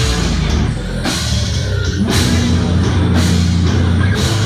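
Live death metal band playing loud: heavily distorted, low-tuned guitars and bass hold low chugging notes over a drum kit, with a cymbal crash about once a second.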